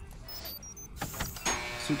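A mechanical whirring whoosh sound effect from an animated show's soundtrack, starting about a second in and quickly swelling louder.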